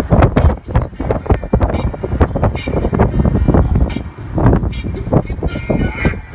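Wind buffeting the microphone of a moving open-top car, a loud, gusty rumble with vehicle noise under it. Music plays faintly beneath.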